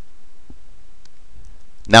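A quiet pause with a couple of faint, short clicks about half a second and a second in, then a man's voice starts speaking near the end.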